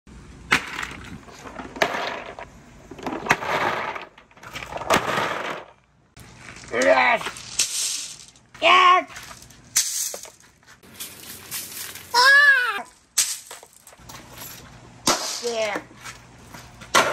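Plastic crates and basins full of glass marbles and plastic balls set down on concrete, the balls clattering and rattling against each other in repeated short bursts. A person gives a few short wordless exclamations between the clatters.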